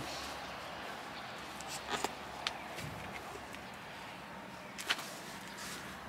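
A few brief taps and scuffs from wet sneakers on brick paving as a foot shifts and lifts, over a steady outdoor background hiss; the loudest tap comes about five seconds in.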